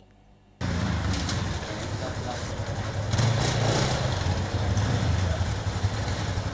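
Motorcycle engine running with street noise, cutting in suddenly about half a second in and holding steady with a strong low rumble.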